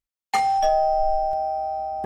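Two-tone doorbell chime, ding-dong: a higher note starts suddenly about a third of a second in, a lower note follows just after, and both ring on, slowly fading.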